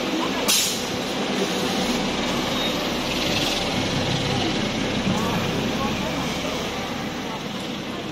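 Natural-gas city bus running at the kerb close by, with a short sharp hiss of its air brakes about half a second in and a fainter hiss a few seconds later, over steady street noise and background voices.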